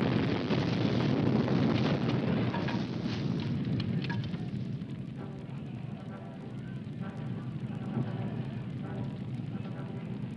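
Rumble and crackle left after an explosive cannon charge blows a truck over in a film stunt. It is loud at first and dies away over about five seconds, leaving a quieter background with faint voices.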